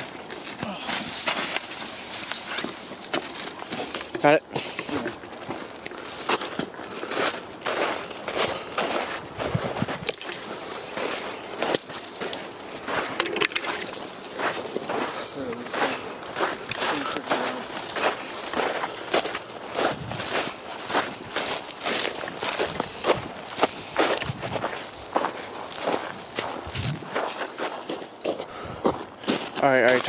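Footsteps of several people walking quickly through snow, a steady run of irregular crunching steps.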